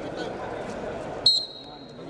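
Referee's whistle blown once about a second and a quarter in, a sharp high blast whose single tone lingers, starting the wrestling bout. Before it, voices and the murmur of the sports hall.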